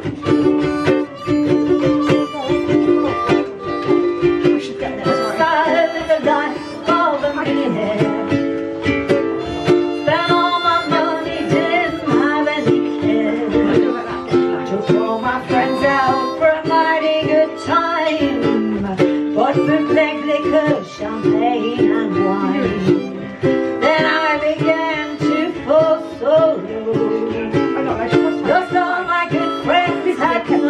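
Ukulele strumming chords with a harmonica playing the melody over it: a live instrumental rendition of an early-1900s jazz standard.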